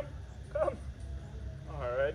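A dog whimpers briefly, one short pitched whine about half a second in.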